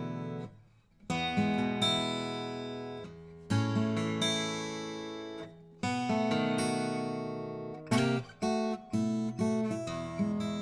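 Furch Rainbow Series OOM-CP acoustic guitar, cedar top with padauk back and sides, played solo. Chords are struck and left to ring out. There is a short pause just under a second in, and quicker strummed chords near the end.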